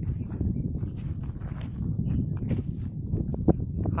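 Wind buffeting a phone's microphone, a steady low rumble with light scattered crackles.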